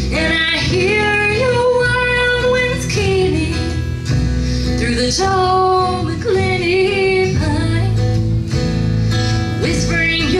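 A woman singing a slow folk-country song with acoustic guitar and upright bass accompaniment, played live.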